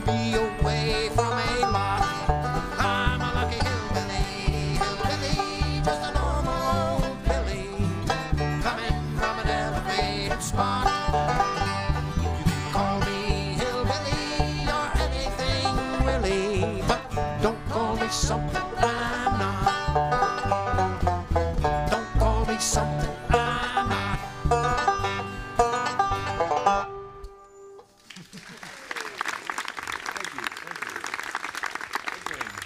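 Live bluegrass band playing the close of a tune on banjo, acoustic guitars and upright bass, with a steady bass beat. The music stops a few seconds before the end and audience applause begins.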